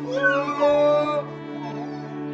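A child crying: one high wail that rises and then holds for about a second, over background music.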